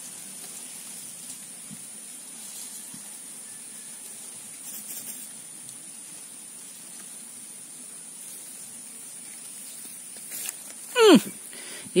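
Quiet outdoor ambience: a faint, steady hiss with no distinct events. About eleven seconds in, a man gives one short exclamation that falls quickly in pitch.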